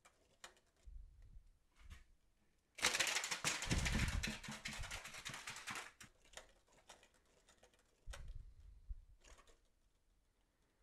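Small 3D-printed PLA ornithopter with a rubber-band-driven crankshaft: a few soft clicks as it is handled and wound, then about three seconds in a fast plastic clatter lasting about three seconds as the wound rubber band drives the crank and wings, and a few more clicks near the end.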